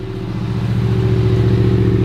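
Hennessy VelociRaptor's supercharged V8 idling just after start-up, a steady low engine note that grows gradually louder.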